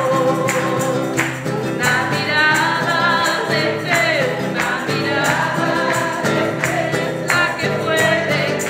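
A woman singing a Christian praise song into a microphone, accompanying herself with steady strumming on a nylon-string classical guitar.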